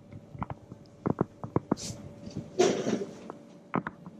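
Scattered light taps and clicks from objects and hands being handled close by, with a short burst of rustling a little past the halfway point.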